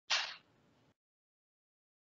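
A single short whoosh of noise, like a breath or rustle at a call microphone, fading within about half a second. The audio drops to dead silence around it, as a video call's noise suppression does between sounds.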